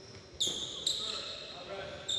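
Basketball bouncing and sneakers squeaking on a hardwood gym floor during a practice drill, with two sharp high squeaks about half a second apart.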